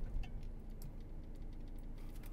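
Van engine idling in the cab just after pulling up: a low steady hum with a few light, irregular ticks and clicks over it.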